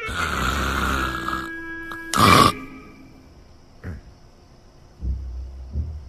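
Loud comic snoring: a long rasping snore in the first second and a half, a short, louder snort a little after two seconds, and another snore near the end. Short music cues sound between the snores.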